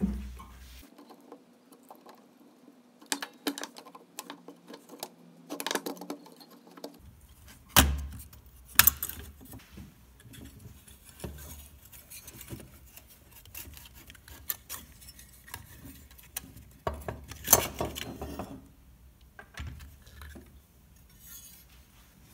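Clicks, scrapes and metallic clinks of the old radio's circuit board being handled and worked free of its sheet-metal chassis. Sharper knocks come about eight seconds in, again a second later, and near seventeen and a half seconds.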